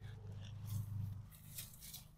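Faint rustling of ginger leaves and stalks as the plants are handled and pulled, over a low rumble that is strongest in the first second and a half.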